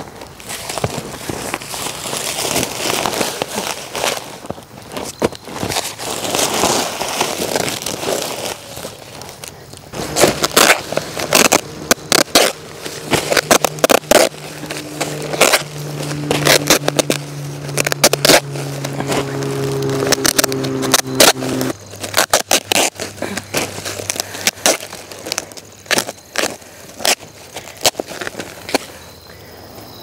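Geotextile fabric being pulled and rustled over the ground, then handled and cut with many sharp crackles and clicks. A steady low hum sits underneath for about ten seconds in the middle.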